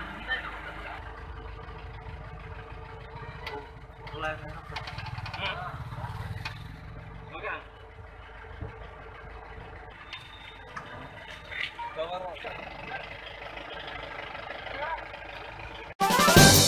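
A vehicle engine idling steadily, with people's voices talking and calling over it.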